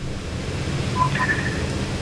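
Steady hiss and low hum of background noise on a broadcast line, with two faint short beeps about a second in.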